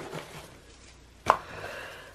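Hair bows being handled in a plastic bin: faint ribbon rustling and one sharp click a little over a second in as a corker bow is picked out.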